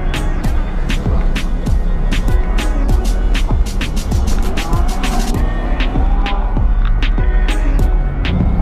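Hip-hop instrumental backing music with a steady beat: evenly spaced sharp ticks over a deep bass.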